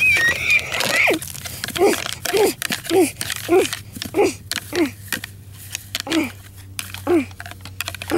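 A child's voice making horse-fight noises: a high wavering squeal for about the first second, then a run of short, falling "ugh" grunts about every half second, pausing briefly near the middle. Scattered clicks and taps run under it as the plastic model horses are knocked together.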